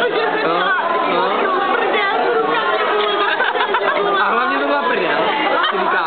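Chatter of several people talking over one another, loud and without a break.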